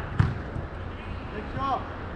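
A single sharp thud of a soccer ball being struck, near the start, followed by a brief shout from a player.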